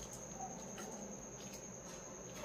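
A faint, steady, high-pitched insect trill, with a few faint clicks as a plastic pipe is worked into the rubber seal of a squat toilet pan.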